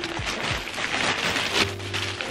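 Plastic shipping bag crinkling and rustling as hands rummage inside it, a dense, continuous crackle.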